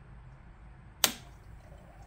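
A single sharp metallic click about a second in as a wrench knocks against the PC water-cooling pump, which has stalled and is not spinning, over a faint low hum.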